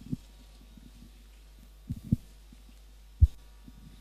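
Handheld microphone being handled and bumped as it is passed along to the next speaker: a few low thumps, the loudest a sharp knock about three seconds in, over a steady low hum from the sound system.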